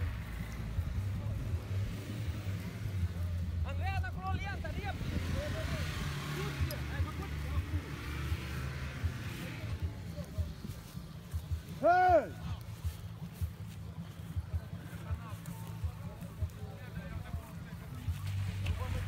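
An off-road 4x4's engine running with a steady low drone. Voices call out about four seconds in, and a short, loud shout comes about twelve seconds in.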